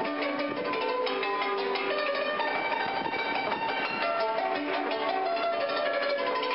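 A fast melody on a stringed instrument, many quick ringing notes in rapid succession, played by a street musician.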